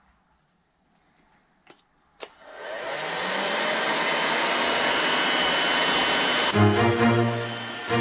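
A heat gun switched on a little over two seconds in, its fan spinning up to a steady blowing hiss as it shrinks heat-shrink tubing over a battery cable's terminal joint. Background music comes in over it near the end.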